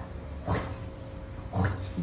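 Two short wordless voice sounds, one about half a second in and a second near the end that rises in pitch, over a faint steady hum.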